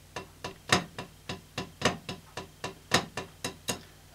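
Drumsticks playing flam paradiddles on a drum practice pad: a steady run of dry taps, about four a second, with a louder flammed accent landing about once a second.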